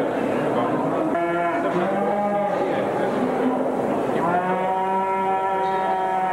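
Cattle mooing: two long moos, the first about a second in, the second starting about four seconds in and held longer, over steady background noise.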